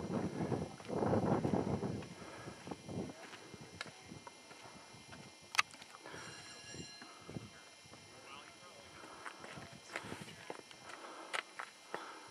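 A person's voice, indistinct, for the first two seconds, then faint, irregular footsteps on a rocky, gravelly path, with a sharp click about halfway through.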